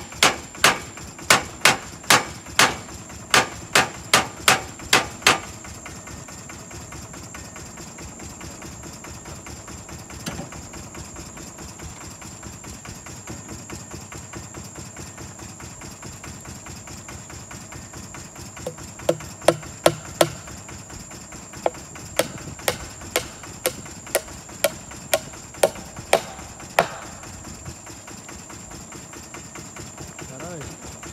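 Hammer blows on nails driven into a tree trunk to fix a metal sign: a steady run of about nine strikes, about a second and a half between... then a pause, then a second, less even run of a dozen or so strikes that ring slightly.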